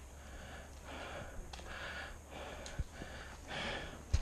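A hiker breathing hard and fast close to the microphone: a run of quick, faint breaths about every half second to a second.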